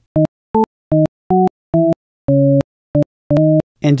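A software synthesizer in LMMS (the TripleOscillator) playing eight short preview notes at varying pitches, one for each note clicked into the piano roll. Each note cuts off abruptly; the sixth is lower and held longer.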